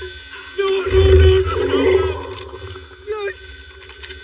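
Action-film soundtrack: a held low music tone, with a deep rumble that swells about a second in and fades, and short pitch-bending sounds over it.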